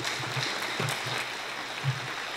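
Audience applauding, a steady spread of many hands clapping.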